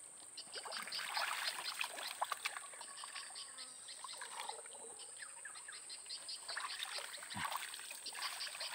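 Muddy water sloshing and gurgling as hands grope through a shallow, weedy ditch for fish. There are bursts of small wet splashes and clicks in the first few seconds and again near the end, with a quieter stretch in between.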